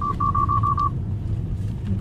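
A quick run of about six short, high electronic beeps at one pitch in the first second, over the steady low rumble of a car cabin.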